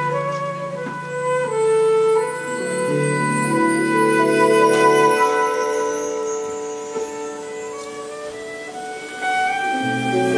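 Concert flute playing a melody of held notes over a live band accompaniment. The low accompanying notes drop out about halfway through and return near the end.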